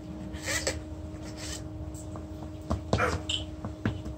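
A fairly quiet stretch over a low steady hum, broken by a few short sounds from small children playing, with a brief cluster of them near the end.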